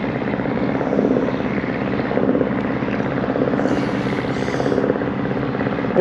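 An engine running steadily, a continuous drone.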